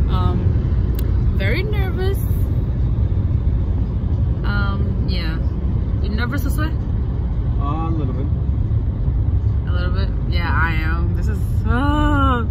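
Steady low rumble of road and engine noise heard from inside the cabin of a moving car.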